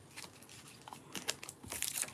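Plastic packaging bags crinkling and rustling as they are handled, in short scattered crackles that are loudest near the end.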